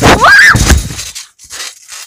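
Loud thuds and rustling from a trampoline bounce and a flip with a handheld phone, with a short rising squeal in the first half-second; the noise fades after about a second.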